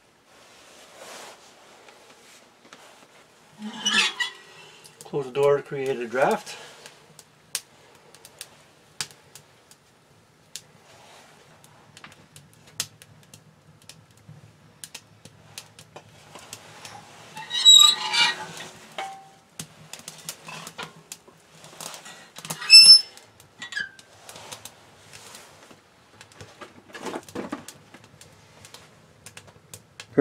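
Newly lit kindling fire crackling inside a small steel woodstove, with scattered small pops. There are a few metal clanks from the stove's door and latch, the sharpest near the middle and about two thirds in.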